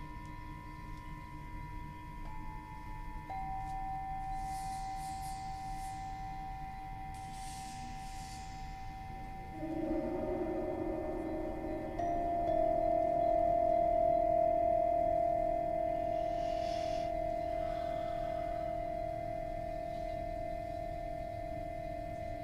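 Metal singing bowls ringing in long, overlapping sustained tones. New bowls are struck about two and three seconds in, again near the middle, and a louder one just after that rings on. Brief bright shimmers of a higher, chime-like sound come now and then.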